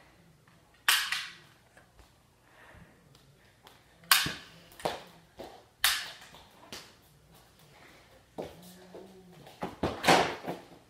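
Three loud, sharp bangs a couple of seconds apart, with fainter knocks between them and a cluster near the end, ringing briefly in a small room.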